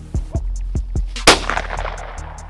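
A single gunshot from a hunter's long gun about a second in, with a short echo trailing after it, over background music with a steady drum beat.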